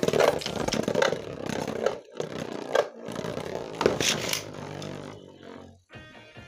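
A Beyblade spinning top scraping and clattering against a plastic stadium, with many sharp clicks from hits and wall contacts, going quieter about five seconds in.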